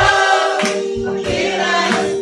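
A small group of women singing together, one voice through a microphone, holding one long note for most of the stretch.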